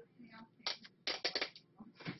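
A small paper raffle ticket rustling and crinkling as it is handled and unfolded by hand, in a few short crinkles clustered about a second in.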